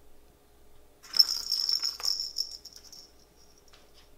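Ball rolling and rattling around the plastic track of a cat's circular track toy as a cat bats it: a jingling rattle starts about a second in and lasts about two seconds, with a sharp click partway through and a faint tap near the end.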